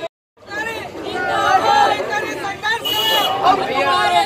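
A crowd of people chattering, many voices talking over one another. The sound drops out for a moment at the very start, then the chatter comes in.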